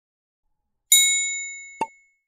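Notification-bell chime sound effect of a subscribe animation: a bright ding about a second in that rings down over most of a second, then a short click just before the end.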